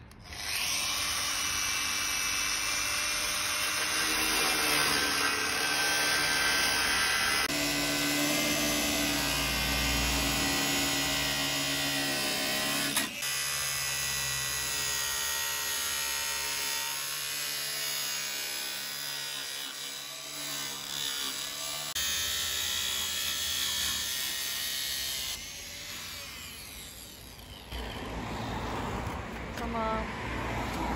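Corded angle grinder with a thin cutting disc running and cutting through a polyester wall panel: a steady motor whine over grinding noise. The tone shifts abruptly several times, and it is briefly quieter a couple of seconds before the end.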